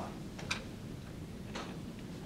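A few short clicks, about half a second in and again near the end, over low room noise.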